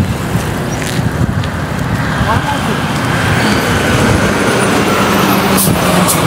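Road traffic with heavy vehicles, a city bus and a cement mixer truck, driving past on the road and growing louder over the second half, with a steady engine hum near the end.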